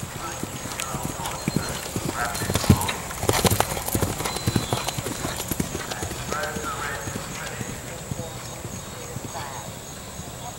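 A horse's hoofbeats on grass turf as it passes at speed. They grow louder as it comes closest, loudest about three to four seconds in, then fade as it moves away.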